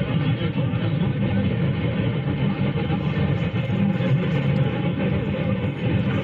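Car radio tuned to AM 1230 kHz picking up weak distant stations (WHIR and WBLJ share the frequency): steady static and noise with faint, indistinct station audio mixed in.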